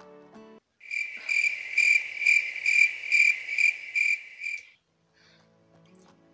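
Crickets chirping: a loud, high, steady trill that pulses about twice a second for about four seconds, starting just after the background music cuts off suddenly. It is the comic 'crickets' effect that marks an awkward silence.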